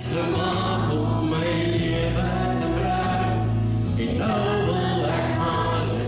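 Christian worship song: a group of voices singing together over steady instrumental backing.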